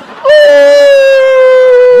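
A person's loud, high-pitched drawn-out cry, one long "oooh" held for about two seconds with its pitch sinking slightly, then wavering as it breaks off.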